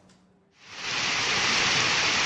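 Heavy rain falling steadily on a road. It is a steady hiss that fades in about half a second in, after a brief silence.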